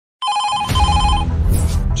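Intro sound effect: a rapidly repeating electronic ring-like tone over a deep low rumble, with a sharp hit shortly after it starts. The ringing stops a little past the middle, and a whoosh follows near the end.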